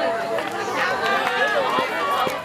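A group of teenagers' voices calling out and chattering at once, many voices overlapping.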